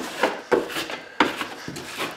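Broad metal putty knife scraping over a paper-faced drywall patch, pressing it flat and squeezing fast-set joint compound out from under it, in about five short strokes.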